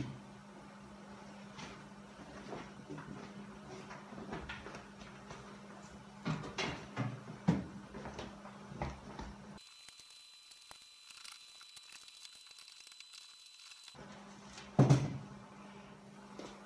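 Scattered knocks, bumps and rustles from hands working the vinyl convertible top and its rear window into place on the top frame, over a steady low hum. A few seconds after the middle the hum drops out and only a faint high whine remains, and one louder knock comes near the end.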